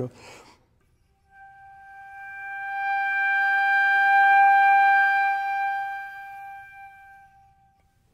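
Gold concert flute holding one high note that begins very thin, swells smoothly to a full tone and fades away again, its pitch staying level throughout. It is a demonstration of a crescendo made with more air but the same air pressure, so the note stays in tune.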